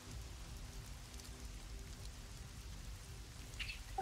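Faint, steady rain-like hiss with a low hum beneath it.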